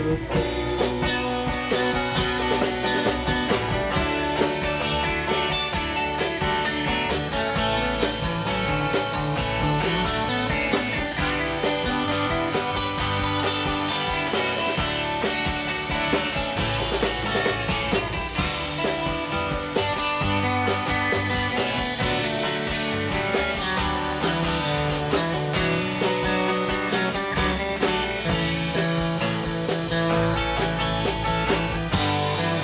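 Live band playing an instrumental break in a country song: electric and acoustic guitars over upright bass and a drum kit, at a steady loud level.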